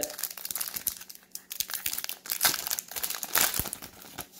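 Foil wrapper of a baseball card pack being torn open and crinkled by hand: a string of irregular crackles, with a couple of louder tears in the second half.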